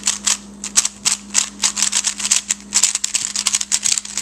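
DaYan LingYun V2 3x3 speed cube, lubed with Lubix, being turned fast: a quick, irregular run of plastic clicks and clacks as the layers snap round, several a second.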